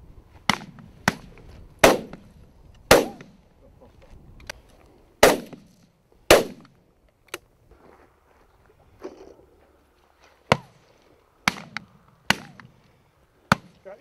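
Shotguns firing on a driven grouse drive: about a dozen shots at irregular intervals. Several are loud with a short rolling echo across the moor, and others are sharper and fainter, from guns farther down the line.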